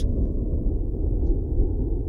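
A steady low rumble, with no other sound over it.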